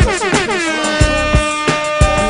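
Hip hop beat with no vocals: a horn-like synth plays quick pitch-bending notes that settle into one long held note about half a second in, over kick drum hits.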